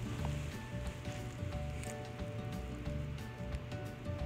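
Soft background music with sustained, held notes over a faint hiss.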